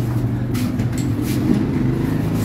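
A steady low motor hum, like an idling engine, with faint rustling over it.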